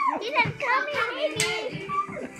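Young children's high-pitched voices, playful vocalising and chatter.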